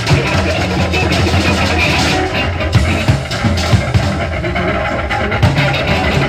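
Loud, dense rock band music with drums, bass and guitar playing together without a break.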